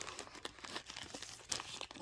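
Faint crinkling of a thin plastic tool-kit pouch and the small zip bags inside it as they are handled and turned over, with one sharper crackle about one and a half seconds in.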